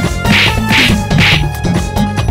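A background music score with a steady beat, overlaid by three short, sharp hit sound effects about half a second apart.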